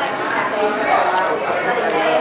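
People talking at a table, with a couple of light clicks near the middle and the end.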